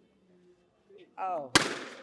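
A rubber balloon bursting once, about one and a half seconds in: a single sharp, loud bang with a brief decaying tail, just after a short rising vocal exclamation.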